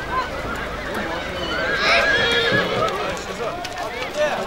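A horse whinnying once, about halfway through, with a wavering call that is the loudest sound, over the chatter of a crowd's voices.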